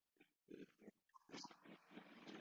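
Near silence on an online call, broken only by a few faint, brief sounds.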